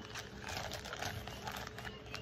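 Hands handling a dark eyeglass case: scattered light taps and clicks with faint rustling.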